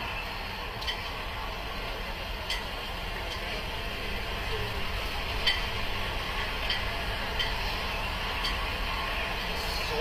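Steady low hum and hiss of a police patrol car's cabin with the engine idling, with a few faint, irregular clicks.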